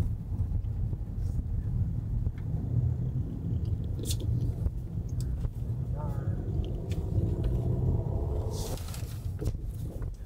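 Steady low road and tyre rumble inside a Tesla Model Y's cabin as the electric car drives slowly through city traffic, with no engine note. A brief rushing hiss comes near the end.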